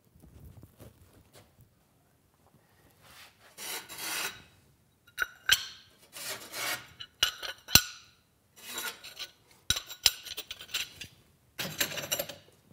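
Fired ceramic pieces and refractory kiln setters scraping against each other as they are slid out of stacked racks. A series of short rasping scrapes with a few sharp clicks.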